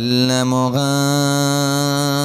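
A man singing a Bengali Islamic gojol (devotional ghazal) into a microphone, holding long, drawn-out notes. A new phrase begins at the start, and the pitch steps up a little under a second in.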